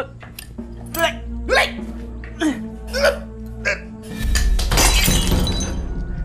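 Dramatic background music with held low tones, and about four seconds in a loud crash as a ceramic bowl of food hits a tiled floor and shatters.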